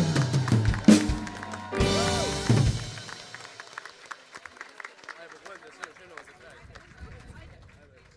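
A live band with drum kit ends a song: held chords punctuated by a few loud closing drum and cymbal hits, cutting off about three seconds in. Then scattered audience clapping and crowd voices, fading away.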